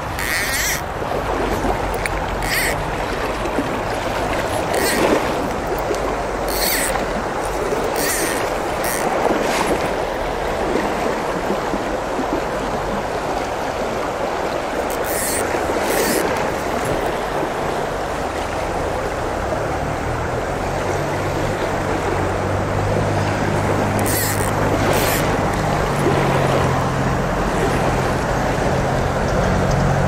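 Steady rush of flowing river water, broken by short sharp sounds several times in the first ten seconds and a few more later on. A low hum comes in during the last third.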